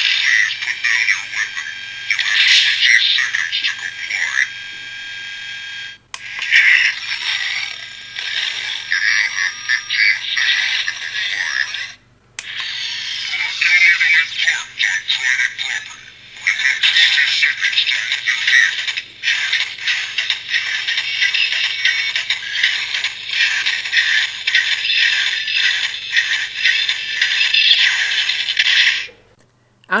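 The NECA ED-209 figure's built-in electronic sound effects from the RoboCop film, played through its small speaker after its side button is pressed. They come as a string of separate clips with short breaks about six and twelve seconds in. The sound is thin and tinny with no bass.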